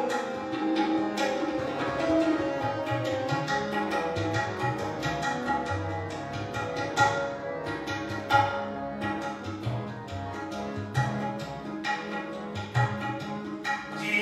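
Harmonium and tabla playing an instrumental passage of Sikh shabad kirtan: held harmonium chords over a quick, steady run of tabla strokes with deep bass-drum thumps.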